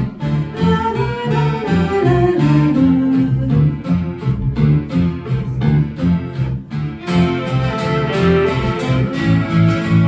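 Live folk band playing an instrumental passage: a fiddle melody over strummed acoustic guitar and an electric bass guitar. The fiddle line falls in pitch over the first few seconds, and about seven seconds in the playing turns brighter and fuller.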